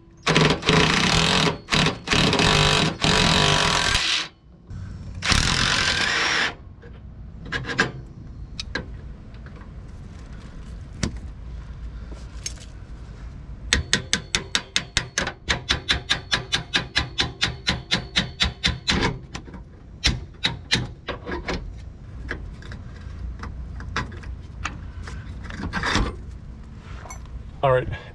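Cordless impact driver running in two bursts, the first about four seconds long and the second shorter, backing bolts out of an RV slide-out gear pack. About halfway through, a hand wrench on the gear pack makes a fast, even run of clicks, about four a second for some five seconds, then a few single clicks.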